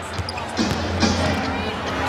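Basketball dribbled on a hardwood court, with a few short knocks, over steady arena crowd noise and a low hum of music.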